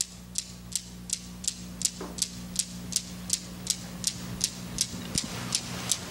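A clock ticking steadily, a little under three ticks a second, over a low steady hum.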